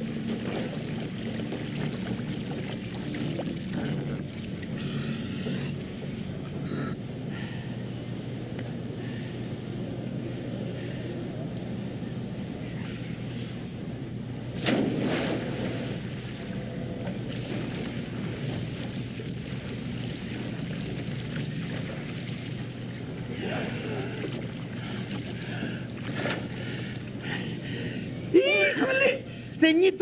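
Water splashing in a swimming pool as a swimmer paddles on an inflatable float, over a steady low hum, with one louder splash about halfway through.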